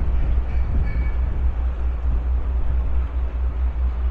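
Passenger ferry's engine running with a steady low drone, under a steady rushing of wind and water.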